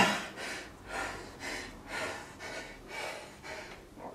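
A man breathing hard and fast from exertion during a high-intensity set on a weight machine, about two noisy breaths a second.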